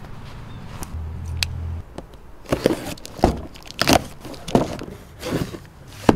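Footsteps crunching on dry leaves and gravel, five or six evenly paced steps, starting about two and a half seconds in.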